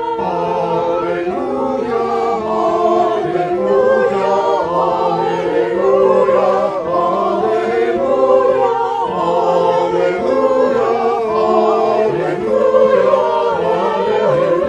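A choir singing in harmony, several voices held in long sustained notes.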